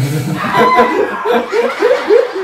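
Young men laughing: a quick run of short chuckles, about four a second, that follows the tail of a spoken remark near the start.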